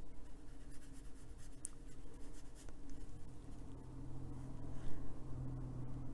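Soft, faint strokes of a watercolour brush on textured paper, with a steady low hum underneath that grows louder in the second half.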